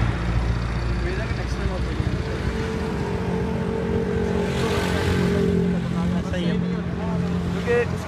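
A motorcycle engine idling steadily, with people talking over it near the start and again near the end.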